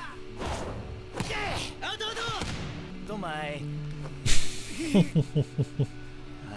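Anime episode audio: Japanese voice dialogue over background music, with a sudden loud hit or crash sound effect about four seconds in. A man then laughs in short bursts near the end.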